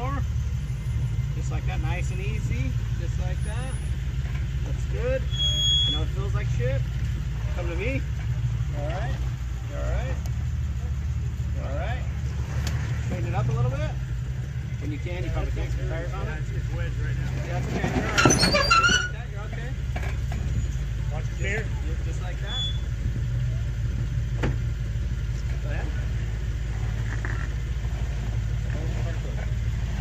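An off-road Jeep's engine idling with a steady low rumble while the Jeep sits on a rock ledge, with a short loud burst of noise about eighteen seconds in.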